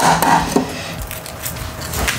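Shell of a hard-boiled egg cracked against a bowl and rubbed by hand: a few sharp crackles in the first half second, then quieter crunching of the shell.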